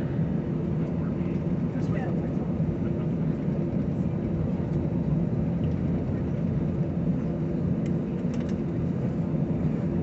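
Jet airliner cabin noise: the engines run with a steady, even rumble heard from inside the cabin, with no rise in pitch or loudness, while the plane waits or taxis just before its takeoff roll.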